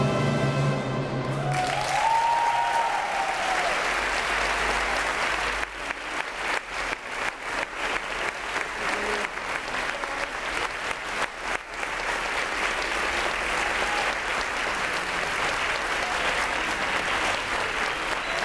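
An orchestra's final held chord ends about a second and a half in, and audience applause follows. The clapping thins to scattered claps midway, then swells again.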